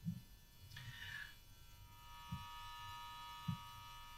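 Faint steady electrical hum, several thin high tones together, that sets in about halfway through, with a few soft low thumps scattered through a quiet room.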